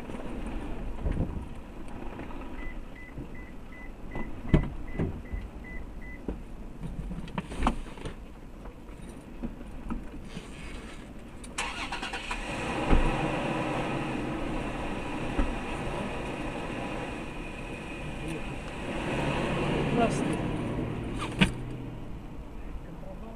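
Inside a stopped car: a run of about ten quick electronic beeps over a few seconds, a few knocks, then about halfway the outside traffic noise suddenly grows louder as the cabin is opened to the outside. Near the end a vehicle passes close by.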